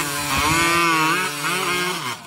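Two-stroke chainsaw running at full throttle while sawing down through a log, its engine pitch dipping and recovering as the chain bites into the wood.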